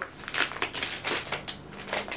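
Clear plastic bag of wax melts crinkling as it is handled, in several short rustles.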